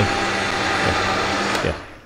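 High-powered countertop blender running on high, puréeing cooked vegetables and water into a smooth, creamy soup. It is switched off near the end and winds down.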